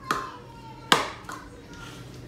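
Metal fork knocking against a ceramic bowl while tossing raw shrimp in seasoning: a sharp clink near the start, a louder one just before a second in, and a lighter tap shortly after.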